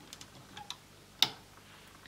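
A few faint light ticks of rubber loom bands and fingertips against the clear plastic pegs of a Rainbow Loom as bands are stretched between pegs, with one sharper click just over a second in.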